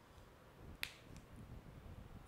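A single sharp click a little under a second in, with a fainter tick just after: the cap of a whiteboard marker snapping on.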